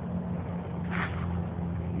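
Steady low hum of distant vehicle traffic, with a brief soft hiss about halfway through.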